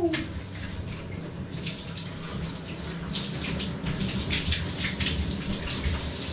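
Shower running cold water, a steady hiss with irregular splashing as the spray breaks over a body and the tub, denser from about a second and a half in.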